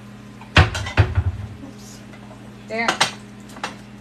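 A loud knock followed by a quick cluster of clattering knocks as a square ceramic serving platter is fetched and set down on a stone kitchen counter.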